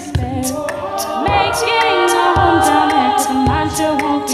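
Female a cappella ensemble singing close harmony chords, over a steady beat of vocal percussion: hissing hi-hat-like ticks several times a second and a low kick about once a second.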